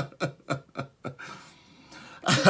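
A man laughing in a quick run of short 'ha' pulses, about six a second, dying away about a second in, followed by a faint breath.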